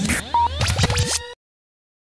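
Short electronic logo sting made of rising pitch sweeps and a rapid string of clicks with a scratchy texture. It cuts off abruptly a little over a second in.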